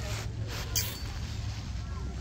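Wind rumbling on the microphone, with faint voices of people in the distance and a short burst of noise less than a second in.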